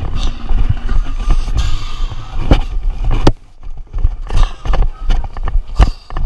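Handling noise from a camera mounted on a marching tuba: knocks, rubs and thumps as the horn is swung and carried. In the second half come sharp clicks at a fairly even pace, like running footsteps on the field.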